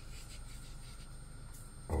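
Quiet room tone: a steady low hum with a few faint, soft rustles, as of fingers handling a small dish of salt.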